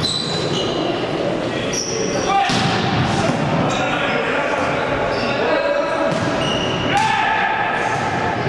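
Volleyball rally on an indoor court: several sharp hits of the ball, many short high squeaks of players' shoes on the court floor, and players' shouts, all echoing in a large hall.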